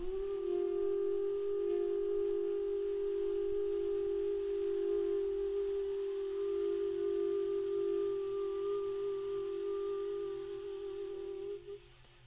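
Tenor saxophone holding one long, soft, steady note for nearly twelve seconds, scooping up into the pitch at the start and cutting off just before the end.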